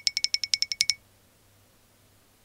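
Cartoon sound effect from an animated intro: a rapid, even train of high ticking tones, about twelve a second, that stops about a second in.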